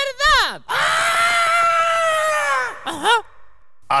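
A puppet character's voice shouts a word and then holds one long, high yell at a steady pitch for about two seconds, dropping away at the end. A short vocal sound follows.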